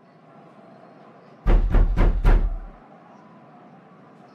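Four quick knocks on a door, each with a deep thud, about a second and a half in, over a faint steady hum.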